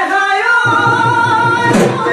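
Men singing a Bihu song in long held notes, with a dhol drum stroke near the end.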